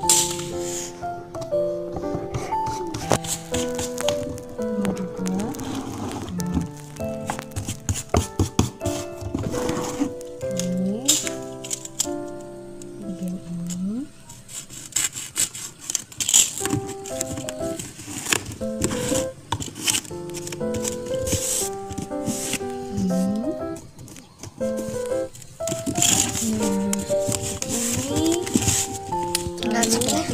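Background music with a stepping melody, over scattered crinkling and clicking from self-adhesive vinyl wallpaper sticker being smoothed and trimmed onto a cardboard box.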